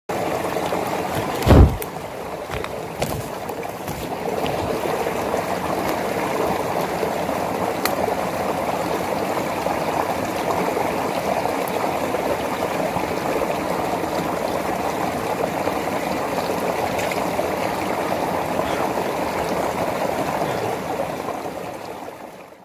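Small spring-fed stream of ice-cold water running out from under a rock and flowing over stones, a steady close water sound. A single sharp thump about a second and a half in.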